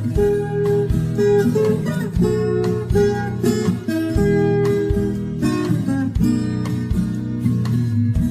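Instrumental break in a sertanejo raiz song: acoustic guitars playing a plucked melody over strummed chords and a steady bass line, with no singing.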